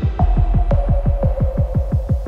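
Dark neurofunk drum and bass in a bass-heavy stretch: a fast pulsing bass at about eight to nine pulses a second over a deep sub-bass that swells just after the start, with a held tone above it and no drums or vocals.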